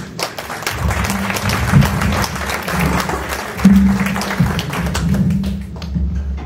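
An audience applauding, with music playing underneath.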